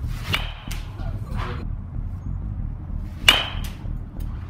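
A bat hits a baseball off a batting tee: a sharp ping with a short ring about three seconds in, the loudest sound. A similar, quieter ping comes just after the start.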